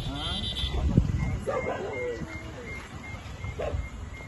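People talking at a roadside, with an animal's cry in the first second and a sharp thump about a second in.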